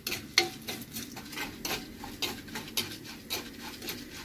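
Steel spoon stirring and scraping lentils and dried red chillies frying in oil in an earthenware pot, with repeated irregular scrapes and taps, about three a second, over a faint sizzle.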